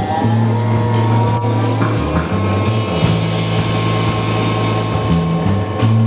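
A psychedelic rock band playing live, with sitar, bass guitar and drum kit with cymbals. A sustained melody note bends upward in the first second and then holds, over a bass line that changes note every second or so.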